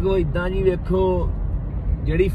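Steady low rumble of road and engine noise inside a moving car's cabin, under a person talking during the first second or so.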